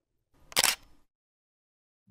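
A single camera-shutter click sound effect about half a second in, short and sharp; the rest is near silence.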